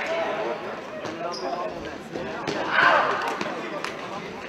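Futsal ball being kicked and bouncing on a sports-hall floor, a few sharp thuds that ring in the hall, over spectators' voices. A loud shout rises above the crowd about three seconds in.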